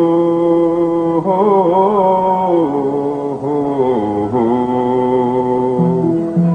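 A sung 'hoo-hoo-hoo' vocal refrain from an old Nepali folk song: a few long held notes stepping from one pitch to the next, one wavering about a second in.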